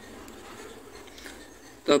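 Pen writing on lined notebook paper: a faint, steady scratching. A short spoken word comes just before the end.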